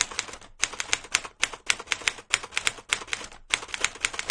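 A rapid run of sharp clicks, several a second and irregularly spaced, like keys being struck. It breaks off briefly about half a second in and again about three and a half seconds in.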